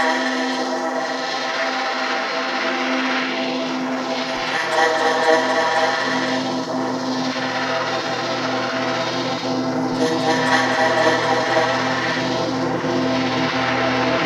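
Ambient electronic music from a liquid drum and bass mix: sustained synth pads and drones with airy noise swells rising and fading about every three seconds. A soft, regular ticking pulse comes in about four seconds in, but there is no full drum beat.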